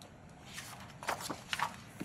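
A few faint, short rustles and taps, handling noise of paper or furniture in a quiet meeting room.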